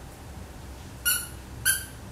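A dog's squeaky toy squeaking twice, about half a second apart, as a toy poodle bites down on it: two short, high-pitched squeaks, the first about a second in.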